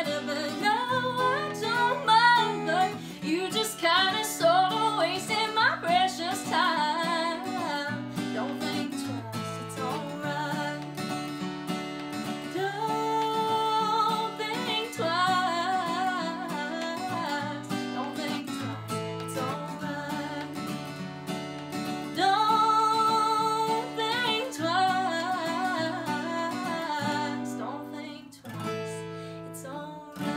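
A woman singing a folk song while playing her own acoustic guitar, voice and guitar only. She holds a few long notes, one about halfway through and another a little later, and the music thins out near the end.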